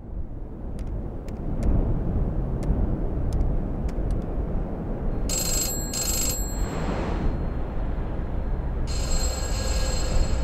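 A telephone ringing over a low, steady rumble of ambience. Two short rings come about halfway through and a longer ring starts near the end, with a brief whoosh between them.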